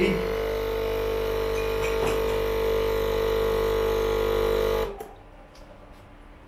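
Breville espresso machine's pump running with a steady hum while pulling a double shot of espresso, then shutting off abruptly about five seconds in as the shot ends.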